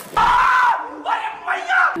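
A short burst of cheering and yelling voices, loudest for about half a second near the start, then trailing off into fainter voice sounds.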